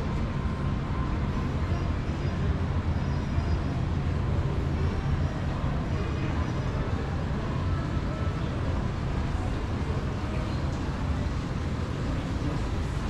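Steady low rumble of background ambience, with faint voices in the background.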